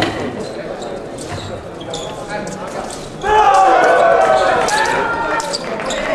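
Sports-hall sounds at a fencing piste: scattered knocks and footsteps on the floor, then, about halfway through, a louder stretch of several voices at once.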